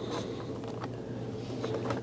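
A Corsair 4 GB memory stick being slid and pushed into a 27-inch iMac's bottom memory slot: a few faint clicks and light scrapes of the module in the slot, the clearest near the end, over a steady low hum.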